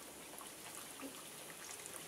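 Breaded tilapia fillets frying in shallow vegetable oil in a skillet: a faint, steady sizzle with small scattered crackles.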